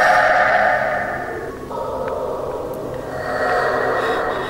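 Eerie, swelling ambient horror-style music or sound effect: a hazy drone that is loudest at the start, ebbs in the middle and swells again near the end.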